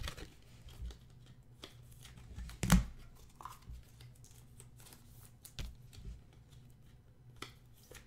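Trading cards and rigid plastic toploaders handled on a tabletop: soft sliding and rustling with a few sharp plastic taps, the loudest about three seconds in.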